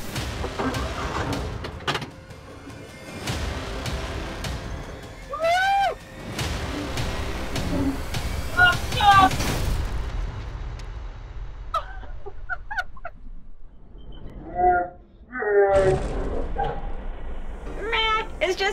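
Kawasaki Mule side-by-side utility vehicle running as it tows a greenhouse on casters across concrete, with rolling and knocking noise. The noise thins out about halfway through.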